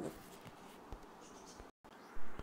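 Faint room noise in a pause of speech, with one soft click about a second in and a brief dead dropout near the end.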